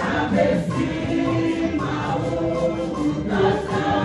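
A church choir singing a hymn in Ewe, many voices together with lead women singing into microphones.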